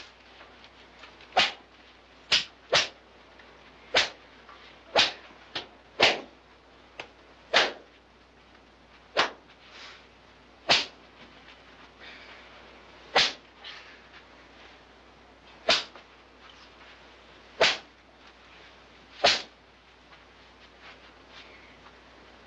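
A schoolmaster's cane striking boys' hands: a series of about fifteen sharp swishing cracks, spaced irregularly one to two and a half seconds apart, a few of them fainter.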